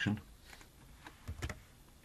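A few clicks of computer keyboard keys, with the clearest ones close together about a second and a half in, as a number is typed into a dialog box.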